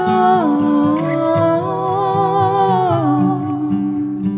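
Music: a wordless sung vocal line of held notes that steps down in pitch about half a second in and again near the end, over strummed acoustic guitar.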